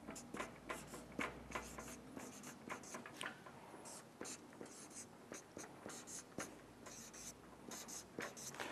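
Marker pen writing numbers on a flip-chart pad: a quiet run of short strokes against the paper.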